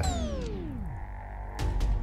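A comic sound effect whose pitch glides steadily downward for about a second and fades out. About a second and a half in, background music with a steady beat starts up.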